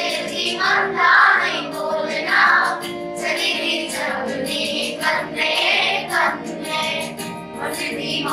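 A group of girls singing a Kashmiri folk song together in chorus, in continuous sung phrases.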